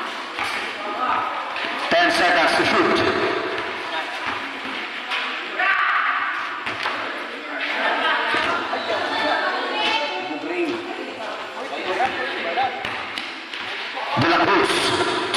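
Spectators and players shouting and calling out over one another during a basketball game, with occasional thuds of the ball bouncing on the concrete court.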